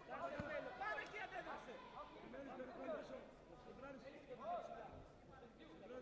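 Several people's voices talking and calling out at once, indistinct, with a brief low thump about half a second in.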